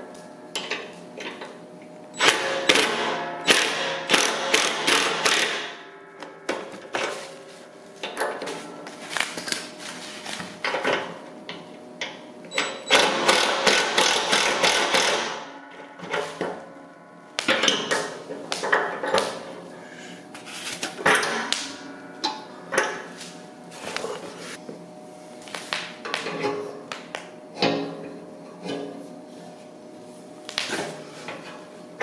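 DeWalt 20V cordless impact driver run in repeated bursts, the longest a few seconds, tightening bolts on a snow plow mount.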